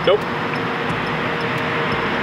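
Steady background noise of vehicles running and traffic at a roadside, with a faint constant hum, after a man's single spoken word.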